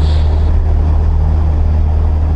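Cessna 172's piston engine and propeller running at takeoff power during the takeoff roll, heard inside the cabin as a loud, steady low drone.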